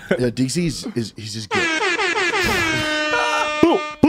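A sound-effect drop: an air-horn blast held for about two seconds, its pitch sliding slowly downward, ending in a few short falling squeals. Brief talk comes before it.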